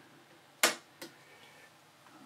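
Two sharp clicks about half a second apart, the first louder, over a faint steady background.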